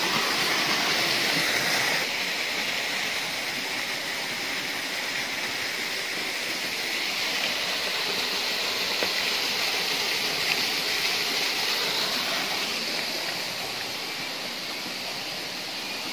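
Water from a small waterfall rushing steadily into a pool, a little louder in the first two seconds.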